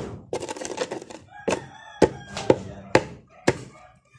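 Pestle crushing lumps of incense and kamangyan resin in a white mortar: a rough grinding for about the first second, then sharp knocks about two a second.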